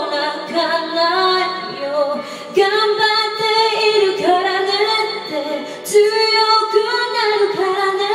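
A woman singing a Japanese pop ballad into a handheld microphone, with long held, sliding notes over backing music.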